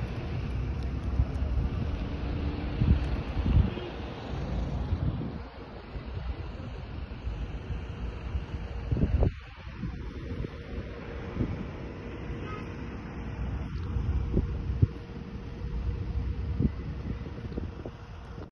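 Outdoor street ambience: wind buffeting a phone microphone in uneven low gusts, over the sound of road traffic.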